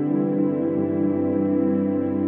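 Ambient intro music: sustained, steady chords held under the logo animation.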